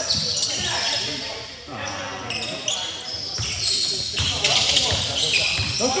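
Basketball dribbling on a hardwood gym floor, a run of low thuds, with sneakers squeaking on the court and players calling out.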